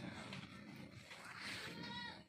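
A faint animal call: one drawn-out pitched cry near the end, over a quiet background.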